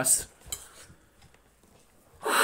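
A voice trails off at the start, followed by a single light click about half a second in.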